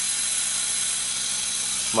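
Steady hiss with a faint low hum: the running background noise inside a semi-truck cab.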